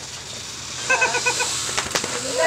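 A person laughing in a quick run of about five short pulses, about a second in, while dogs lick a man's face; a small click follows near the end.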